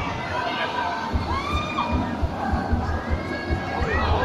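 A crowd of children shouting and cheering, with several high-pitched yells standing out, one rising near the end, over a regular low thudding pulse.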